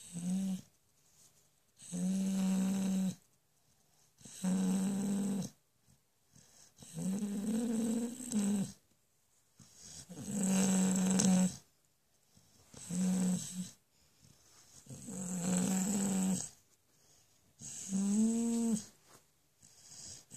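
A sleeping dog snoring: a pitched snore on each breath, about every two and a half seconds, with quiet in between.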